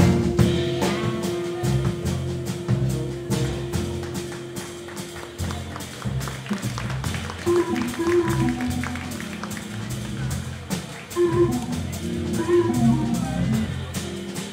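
Live jazz combo playing: double bass and drums with steady cymbal ticks under a long held note that stops about five seconds in. From about halfway through, short piano phrases come in over the bass and drums.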